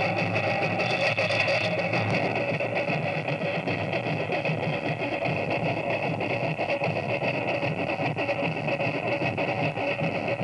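Live music with guitar, going on without a break.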